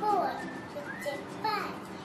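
Children's voices with high, sliding pitches, loudest at the start and again about a second and a half in.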